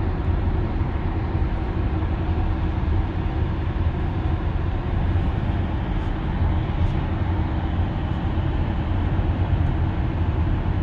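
Steady tyre and road rumble with wind noise inside a Tesla electric car's cabin, cruising on a highway at about 60 mph.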